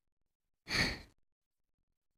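A person's single short sigh, a breathy exhale of about half a second, a little under a second in.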